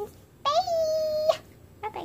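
A child's voice: one high-pitched, drawn-out note, held steady for about a second after a short upward slide.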